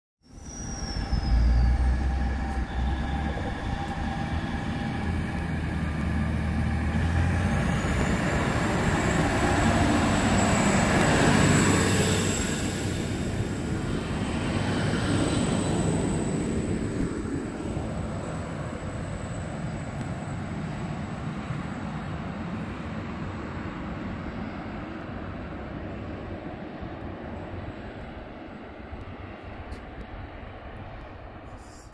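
Diesel railcar running past the platform and pulling away: a deep engine drone that builds, peaks about eleven seconds in, then fades slowly. A thin, steady high whine joins at about eight seconds and dies away in the second half.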